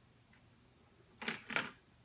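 Felt-tip markers picked up off a table and handled: two short plastic clacks about a third of a second apart, a little past a second in.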